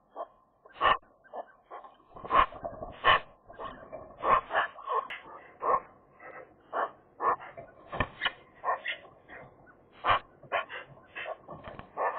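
Several Eurasian magpies exchanging short social calls around their nest: a string of brief calls, irregularly spaced at about one or two a second.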